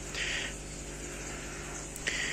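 Low steady background hum, with a brief soft hiss a fraction of a second in.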